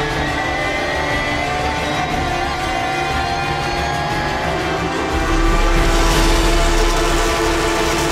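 Porsche 911 GT3 Cup race car's flat-six engine heard onboard under hard acceleration, its pitch climbing steadily through the revs. It gets louder from about five seconds in.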